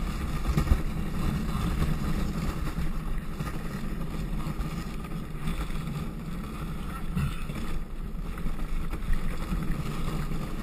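Luge cart's wheels rumbling steadily on the paved track as it rolls downhill, with wind buffeting the microphone.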